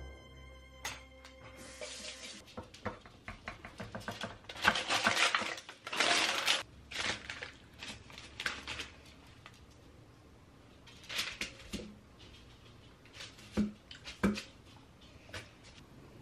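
Kitchen handling sounds: parchment paper rustling in bursts, with clicks and knocks of a knife and a glass plate on a granite counter as bars are cut and plated. Soft music plays underneath.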